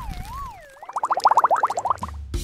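Cartoon dizziness sound effect: a wobbling whistle tone that wavers as it slides downward, then, about a second in, a fast bubbling warble of short rising chirps, about ten a second.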